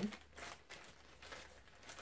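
Faint, scattered rustling and crinkling of toy packaging being handled, a few soft clicks and crackles with no steady sound.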